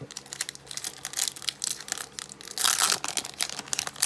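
Foil trading-card booster pack being torn open by hand, its wrapper crackling, with one louder, longer rip about three seconds in.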